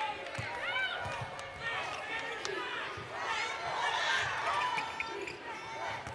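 Live basketball court sound: a ball dribbled on a hardwood floor, sneakers squeaking in short high squeals as players cut, and indistinct voices calling out on the court.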